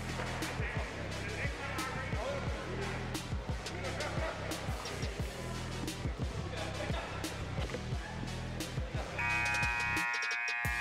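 Basketballs bouncing on a hardwood gym floor in irregular, overlapping knocks, with music and voices in the gym behind them. A steady held tone comes in near the end.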